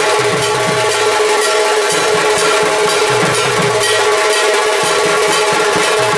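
Dhak drums beaten in a fast, continuous rhythm, with a bell-metal kansar gong struck along with them, its metallic ring held steady over the drumming.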